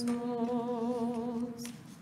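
Church chant voices holding a long sung note without words: a steady low drone under a slightly wavering line, fading away about a second and a half in.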